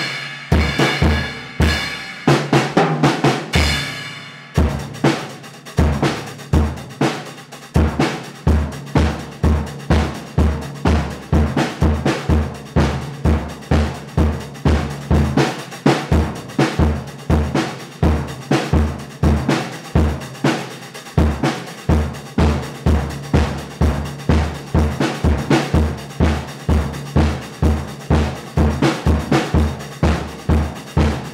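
Acoustic drum kit being played: cymbals ring under fast strikes for the first four seconds or so, then the playing settles into a steady groove of bass drum and snare hits.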